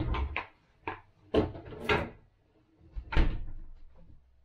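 About half a dozen short knocks and clunks of a plastic soda bottle and a glass being handled and set down on a kitchen counter, the loudest about three seconds in.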